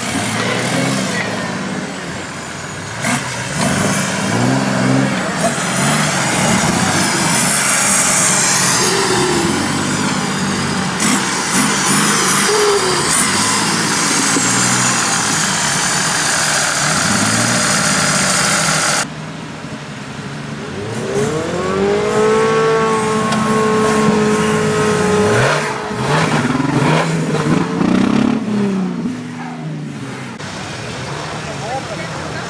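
Lifted off-road 4x4's engine revving up and down repeatedly as it crawls over steep dirt mounds. About two-thirds of the way through, the sound drops abruptly, then a higher rev comes in, its pitch sweeping up and holding for a few seconds.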